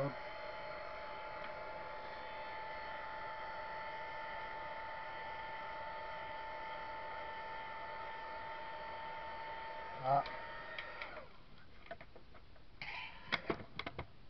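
Handheld craft heat gun running with a steady whine, blowing hot air to dry the work. About eleven seconds in it is switched off and the whine falls away, followed by a few light clicks and knocks of things being handled.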